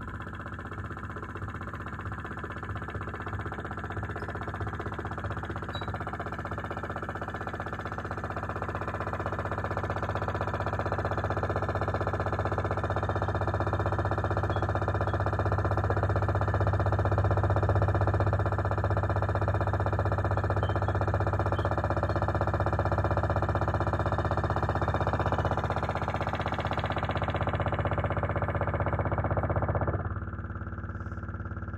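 Live experimental electronic drone played on a small hand-worked mixer and effects setup: a dense, sustained wall of held tones over a strong low hum. It swells slowly to its loudest a little past the middle, and its highest layer thins out near the end.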